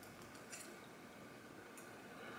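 Near silence: faint room tone with two faint small clicks, about half a second in and again near the end, from eating with a metal spoon out of a glass bowl.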